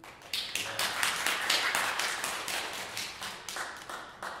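Small audience applauding, the separate claps clearly heard, thinning out near the end.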